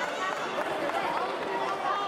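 Arena crowd chatter: many voices talking over one another at a steady level, with no single voice standing out.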